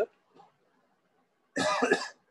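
A man coughs once, a short sharp cough about one and a half seconds in, after a near-silent pause.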